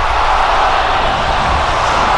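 A steady, loud rush of noise over a deep rumble, with no singing in it.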